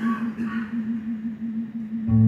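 A man's voice holding one long, low hummed note with a slow, even vibrato, unaccompanied.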